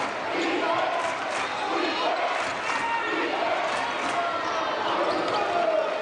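Basketball game sounds in an arena: spectators chattering and calling out while a basketball bounces on the hardwood court, with several sharp bounces heard.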